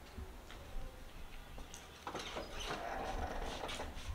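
Light footsteps and small clicks on a tiled floor, then from about two seconds in a door being handled and opened, with cloth rustling.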